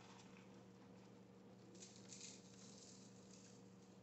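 Near silence with faint light rustling, a little stronger about two seconds in and again near the end, as frozen chopped coriander is picked from a plastic tub and scattered over a tray of food. A faint steady hum runs underneath.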